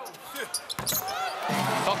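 A basketball bouncing on a hardwood arena court during live play, with a few sharp bounces in the first second, followed by a man's commentary voice coming in over the court sounds.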